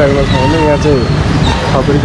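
A man's voice talking over steady street traffic noise.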